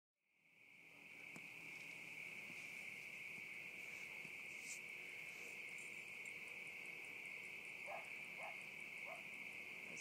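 A steady night chorus of insects, one continuous high drone that fades in over the first second. Near the end, three faint short calls sound lower down, which sound like a dog.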